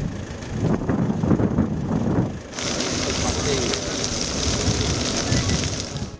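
Field sound of a grass fire: a steady hiss of burning vegetation and wind on the microphone, with people's voices faintly underneath. The hiss becomes much louder and brighter about two and a half seconds in.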